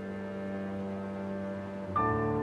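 Sombre documentary background music: a low chord held steadily, then a new, louder chord coming in just before the end.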